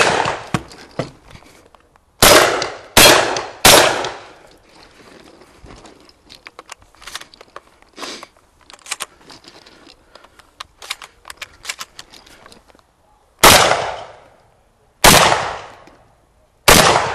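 Gunshots from a long gun on a shooting stage: three shots in quick succession about two seconds in, then a run of small clicks and rattles as the gun is handled and reloaded, then two more shots near the end, each with a ringing tail.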